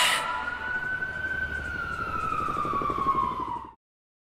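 A siren sound effect ending a K-pop track: one long wailing tone that rises a little, then slowly falls and cuts off abruptly shortly before the end.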